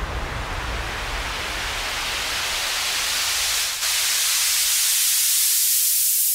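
A white-noise riser in an electronic pop track: a steady hiss that grows brighter and slightly louder while the low rumble under it fades away in the second half.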